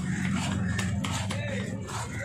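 A cleaver chopping through a seer fish (vanjaram) on a wooden block, several short sharp knocks. Voices talking and a steady low hum run underneath.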